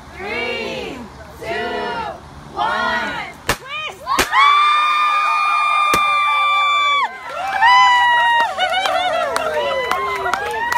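Voices shout in unison about once a second, then two sharp pops from handheld gender-reveal powder cannons sound about three and a half and four seconds in. A long, high, held scream follows, then excited shrieks and cheering.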